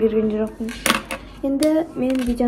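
A plastic ballpoint pen set down on a desk, giving a short clatter about a second in.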